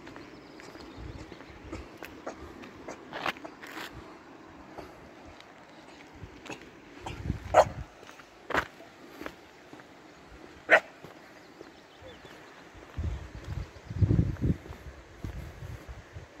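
A dog barking: three short sharp barks in the middle, a second or two apart. Low muffled thumps follow near the end.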